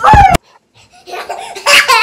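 Young children laughing: a loud, high laugh right at the start, a brief pause, then more laughter building up near the end.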